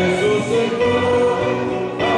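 A choir singing a church hymn, held notes moving in steps over a low sustained accompaniment.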